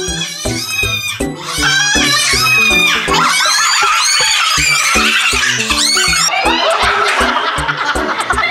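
Background music with a steady beat, with a group of people laughing loudly over it from about a second and a half in.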